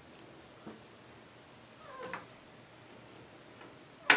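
A Siamese mix cat gives one short, soft meow about two seconds in, ending in a small click. A faint tick comes earlier.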